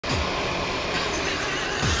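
Steady road noise heard inside the cabin of a moving car at highway speed, with a low thud near the start and another near the end.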